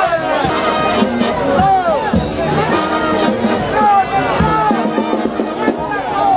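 Brass band playing a second-line parade tune, horns over a dense mix, with crowd voices shouting along.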